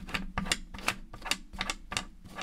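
A deck of cartomancy cards being shuffled by hand, overhand style: a quick, irregular run of soft clicks and riffles, several a second, as the cards slip against one another.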